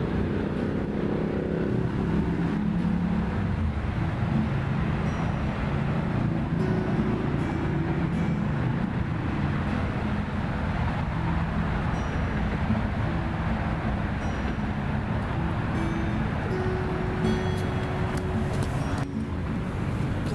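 Steady road traffic noise, with background music playing along.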